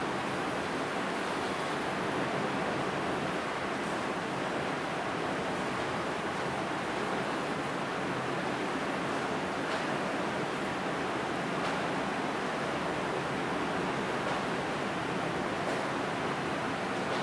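Steady, even hiss of room noise with no change in level, with a few faint brief scratchy sounds now and then.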